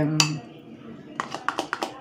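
A spoon clicking against the plastic yogurt tub and the glass as yogurt is spooned into the glass: one click near the start, then a quick run of about six light clicks in the second half.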